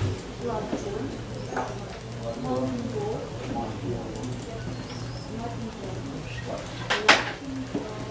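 Indistinct voices talking quietly in a small room over a steady low hum, with one sharp knock about seven seconds in.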